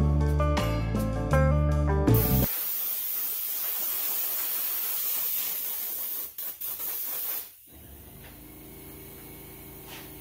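Background music for about the first two seconds. Then a Harbor Freight deluxe airbrush spraying latex mask paint with a steady hiss. The hiss breaks up a few times about six seconds in and cuts off at about seven and a half seconds: the airbrush has run out of paint.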